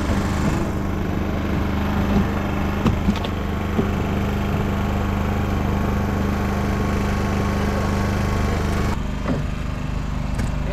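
A small engine running steadily, a constant low hum, with a few light knocks. Near the end the sound changes abruptly and gets a little quieter.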